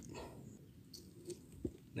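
Faint handling noise from a hand gripping a freshly caught tilapia: a quiet background with two short soft clicks a little after the middle.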